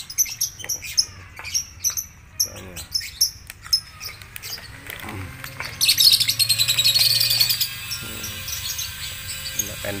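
Lovebirds chattering: many short, high chirps, then about six seconds in a louder, denser burst of chatter lasting nearly two seconds.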